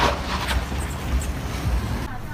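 Low rumble of passing road traffic, with a sharp knock at the start and another about half a second in.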